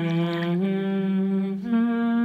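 A voice humming slow, held notes in a soundtrack song. The pitch steps up a little past halfway and again near the end.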